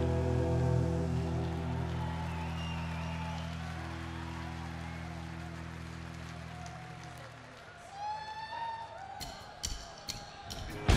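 The last chord of a punk rock song left ringing through the guitar and bass amplifiers, fading away over about seven seconds. A festival crowd then cheers and shouts, and near the end drumsticks click together in an even count-in for the next song.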